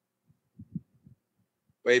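A pause in speech with a few faint, low murmuring sounds, then a voice resumes talking near the end.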